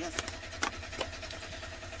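A few short clicks and taps as plastic-sleeved cash envelopes are handled on a desk, over a steady low hum.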